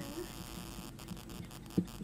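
Steady low electrical mains hum in a pause between speech, with one short soft knock near the end.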